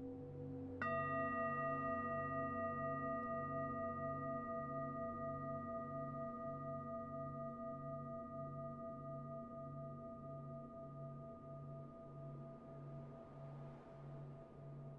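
A singing bowl struck once about a second in, ringing on with several steady tones that slowly fade, over lower, evenly pulsing ringing tones that carry on throughout.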